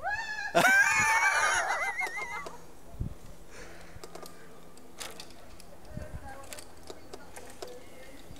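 A burst of high-pitched laughter from onlookers for about two and a half seconds, then quieter outdoor background with a few faint knocks.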